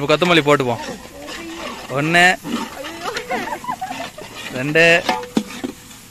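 People talking in short bursts while a large aluminium pot of biryani masala is stirred with a long metal ladle. A steady tone comes in near the end.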